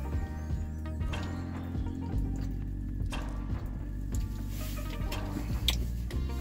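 Background music.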